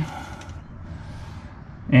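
Low, steady background rumble with a faint hiss about a second in, between two bits of a man's speech.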